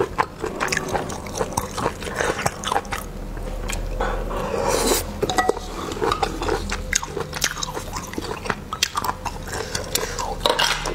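Close-miked eating of spicy river snails: sucking the meat out of the shells and chewing, with frequent short wet clicks and smacks. A longer sucking sound runs from about three seconds in and stops abruptly about five seconds in.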